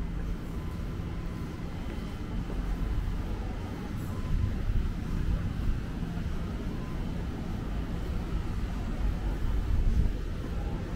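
Steady low rumble of city street ambience, with a faint steady hum.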